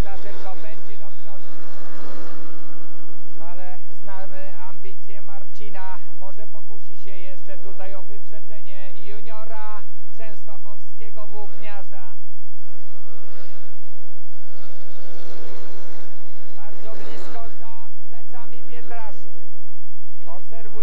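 Speedway motorcycles racing round the track during a heat, their engine note rising and falling, with a man's voice talking over it.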